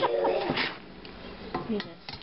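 Metal spatula working under a salmon fillet in a stainless steel pan, with a sharp clank against the pan about half a second in and a lighter knock near the end.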